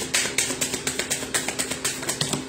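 Tarot cards being shuffled by hand: a rapid, uneven run of light clicks and taps.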